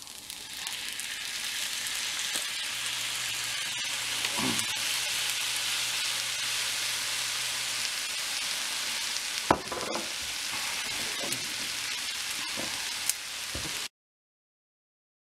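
Day-old rice and soy sauce sizzling in a hot pan for fried rice: a steady frying hiss that builds over the first second or two as the soy sauce hits the pan. A plastic spoon stirs the rice and knocks sharply against the pan twice in the second half, and the sound cuts off suddenly just before the end.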